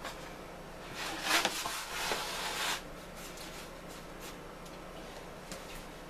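Rubbing and scraping of bread dough being handled and set down on a baking sheet, in two short stretches about a second and two seconds in, over a faint steady hum.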